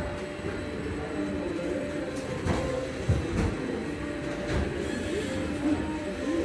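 A dark-ride vehicle running along its track: a steady low rumble with a few knocks, under faint held tones.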